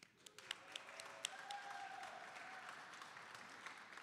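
Audience applauding, heard faintly. A few separate claps at first fill into steady clapping.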